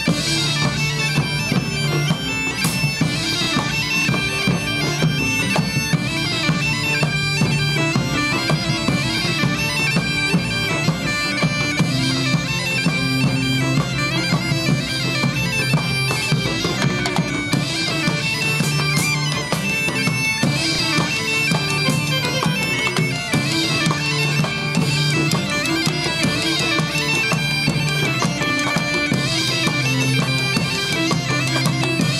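Galician gaita (bagpipe) playing a lively melody over its steady drone, with a drum beating time beneath it, in an outdoor medieval folk band.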